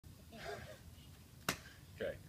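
A faint, brief murmur of a voice, then a single sharp click about one and a half seconds in.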